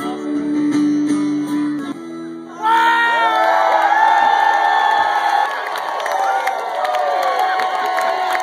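Live blues-rock band playing, with acoustic and electric guitars. About two and a half seconds in the sound gets louder and a harmonica comes in with long held notes over the band, with cheering from the crowd.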